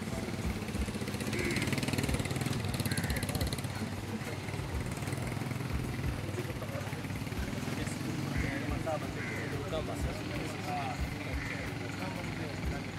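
A vehicle engine idling steadily close by, with people talking in the background.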